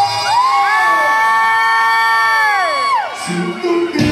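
A long, high whooping yell, a Mexican grito, over the conjunto band. It rises at the start, is held steady for about two seconds, then slides down and stops about three seconds in, and the band's accordion and bass come back near the end.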